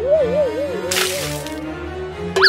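Cartoon sound effects over background music: a wobbling tone that bounces up and down about six times, with a short whoosh about a second in.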